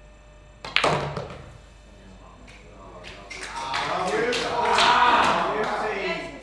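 Quick clack of a pool cue ball struck into the 8 ball about a second in, the 8 ball dropping into the pocket. Then the crowd's cheering and clapping build up, loudest near the end.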